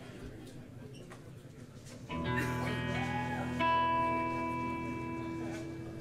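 Electric guitar struck about two seconds in and left to ring as a sustained chord, with a second chord or note added a second and a half later and held until the end.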